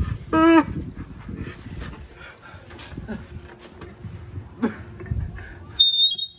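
A person's short, loud, high-pitched squeal about half a second in, followed by quieter scuffling and handling noise and a brief high beep near the end.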